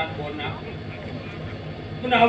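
A brief pause in the dialogue: a steady low hum carries through, with a faint voice just at the start.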